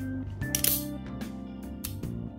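A few sharp metallic clicks from the hand-worked action of a partly reassembled Colt 1878 double-action revolver, whose trigger guard is not sitting where it should, over steady background music.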